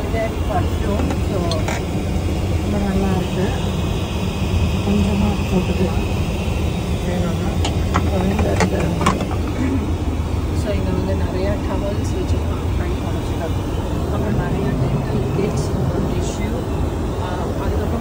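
Airliner cabin noise heard inside an aircraft lavatory: a steady low rumble with an airy rush above it, and a few light clicks about halfway through.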